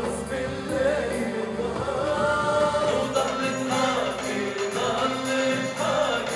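Live Arabic pop music: a male singer on a microphone with a band behind him, with several voices singing together.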